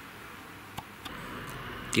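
Quiet, steady room hiss with one short click about a second in and a couple of fainter ticks after it.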